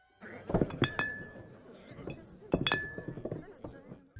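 Two sharp metallic clinks about two seconds apart, each struck twice in quick succession and leaving a brief ringing tone, over a rustling, clattering noise.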